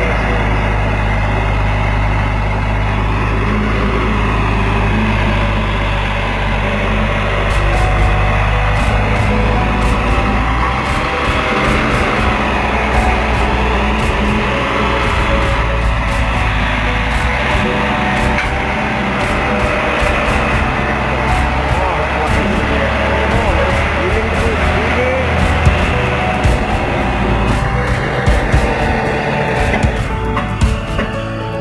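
Diesel engine and hydraulics of a truck-mounted crane running steadily under load as it hoists a heavy fishing net, with scattered clanks from about eight seconds in, mixed under music and voices.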